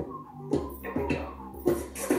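Recorded pop song playing: an instrumental stretch without singing, with a steady beat about twice a second.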